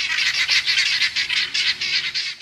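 A flock of helmeted guinea fowl giving their harsh, rapid alarm chatter, many birds calling over one another in a continuous loud racket, as they mob a snake.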